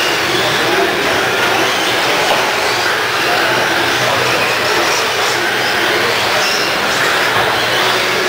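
Several 1/10-scale electric RC stadium trucks racing around an indoor track: a steady, loud blend of motor whine and tyre noise in a large hall.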